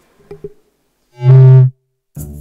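Music: a couple of faint soft notes, then one loud held low note with rich overtones lasting about half a second, from a musical sting opening a segment.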